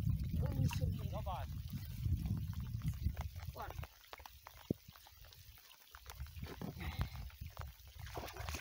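Wind rumbling on the microphone over the first few seconds, with small splashes and lapping of lake water at the rocks as a trout is let go into the shallows.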